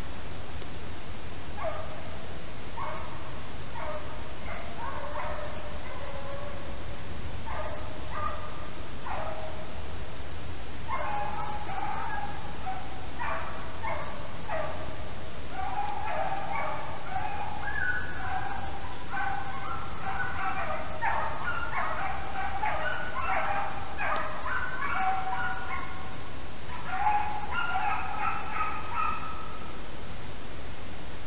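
Beagles baying as they run a hare. Single calls come scattered at first, then come more often and overlap from about a third of the way in.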